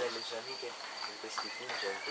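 Crickets chirring in a steady high-pitched trill, with faint murmured speech beneath.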